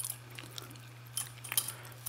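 A few light metallic clicks of keys on a keyring being handled, over a steady low hum.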